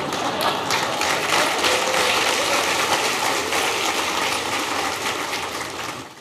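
Large audience laughing and applauding: a dense, steady clatter of clapping mixed with laughter, dying away near the end.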